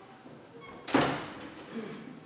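A door shutting once, about a second in: a single loud bang that dies away over half a second in the echo of a large room.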